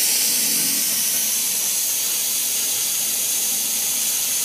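Amtrol WX-250 well pressure tank draining out, a steady hiss.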